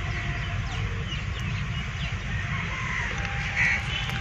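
Birds chirping faintly here and there over a steady low rumble.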